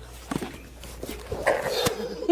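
Feet shuffling and scuffing with light knocks as one person climbs onto and is lifted by another, followed near the end by a short noisy scuffle and a sharp click.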